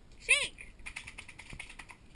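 A short, high-pitched call that rises and falls once, then a run of quick, light clicks, like a Labrador's claws ticking on a concrete patio as she walks.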